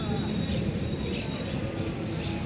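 Busy city street ambience: a steady low rumble of traffic, with a thin, high metallic squeal in the first half that lasts about a second.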